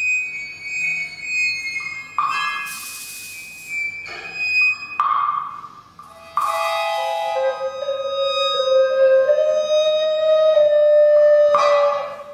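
Contemporary chamber music for recorder, panpipes, viola, accordion and percussion: overlapping held tones, broken twice by brief bursts of hiss, then a long held tone that slowly rises in pitch through the second half.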